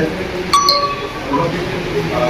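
A single light clink of a small hard object about half a second in, ringing briefly, over low background voices.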